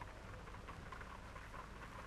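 Faint background of an old optical film soundtrack: a steady low hum and hiss with scattered light clicks and crackle.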